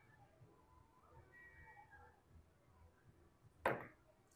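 A carom billiard shot at close range: after a near-silent stretch, the cue strikes the cue ball near the end and it clicks straight into the nearly touching red balls in one short, sharp cluster of knocks. The shot comes out too hard.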